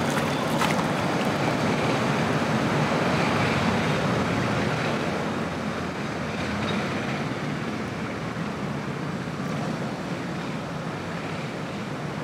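Pool water sloshing and splashing steadily as a swimmer moves underwater through an above-ground pool, with a few sharper splashes in the first second.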